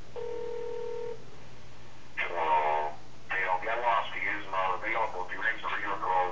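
A steady telephone tone for about a second, then about two seconds in a voicemail greeting spoken by the Microsoft Sam text-to-speech voice, heard through a phone's speakerphone.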